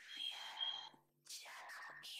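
Soft, faint speech, almost whispered, with a short break about a second in.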